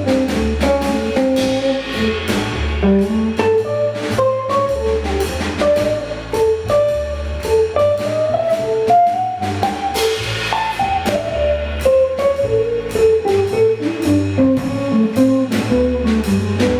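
A small jazz group playing: hollow-body electric guitar taking a single-note melodic line over a Gretsch drum kit with busy cymbal and drum strokes and a walking bass line underneath.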